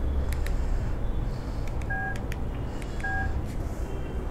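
Two short electronic beeps about a second apart over a steady low hum, with a few faint clicks in between.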